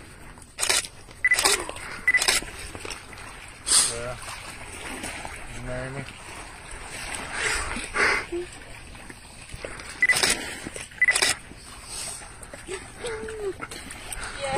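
Short, separate bursts of a woman's voice, gasps and exclamations of surprise and emotion, with a few brief voiced sounds between them.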